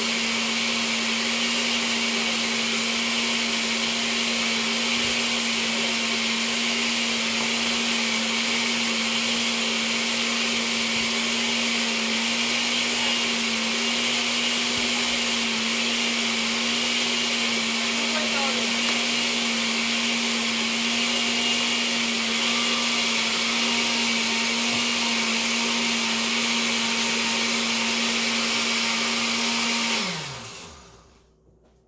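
Countertop blender running steadily at an even pitch, puréeing chopped onion, bell peppers, cilantro, garlic, water and spices into a sofrito/adobo paste.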